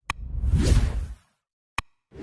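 Outro animation sound effects: a short click, then a whoosh lasting about a second that fades away, and another short click near the end.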